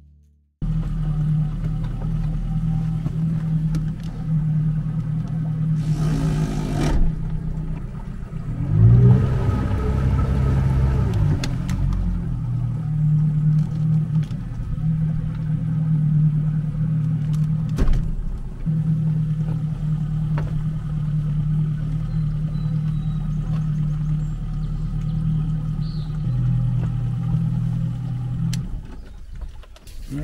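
Boat's outboard motor running steadily, with a brief surge about nine seconds in. It drops in pitch and then shuts off shortly before the end.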